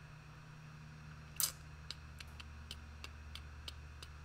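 Light clicks of a computer mouse, one short scratchy burst about a second and a half in, then a run of soft clicks about three a second, over a faint steady low hum.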